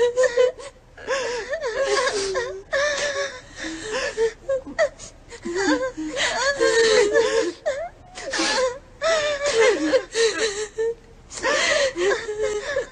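Women wailing and sobbing in grief: repeated high, wavering cries broken by gasping breaths.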